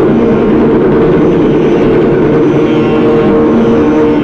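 Hindustani classical ensemble music: clarinet and harmonium holding steady notes over tabla, with a dense, rough texture.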